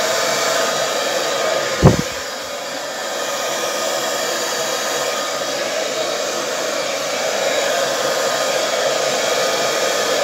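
Hand-held hair dryer running steadily, blowing wet acrylic paint out across a canvas. A single low thump about two seconds in is louder than the dryer.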